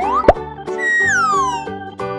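Children's background music with cartoon sound effects: a short rising whistle at the start, a loud pop about a third of a second in, then a long falling whistle glide.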